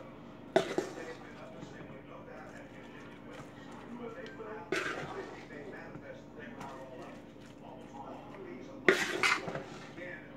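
A metal spoon scooping potato salad from a stainless steel mixing bowl into a white casserole dish, scraping the food, with three sharp knocks of the spoon against the dishes: just after the start, near the middle and near the end.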